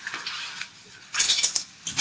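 A brief burst of clattering, rustling handling noise a little after a second in, short and clicky.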